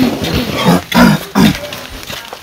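Three short, loud grunts in quick succession, each falling in pitch.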